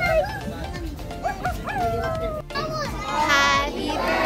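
A small dog barking a few short times, amid children's voices and background music.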